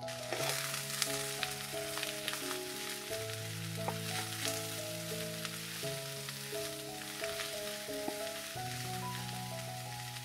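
Sliced mushrooms frying on high heat with onions in an oiled pan, a steady sizzle that jumps up about a third of a second in as the mushrooms hit the pan, with scattered clicks of a wooden spatula stirring. Soft background music underneath.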